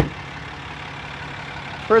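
A pickup's rear crew-cab door shutting with one thud right at the start. Then a steady low hum of the truck's 6.7-litre Cummins diesel idling.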